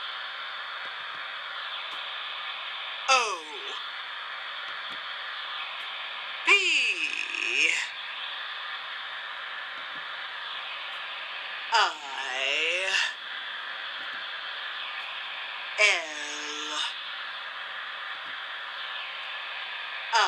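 Ghostly voice sounds from the spirit-board game playing through a phone's speaker: a short eerie call with a falling pitch, four times at roughly four-second gaps, over a steady hiss.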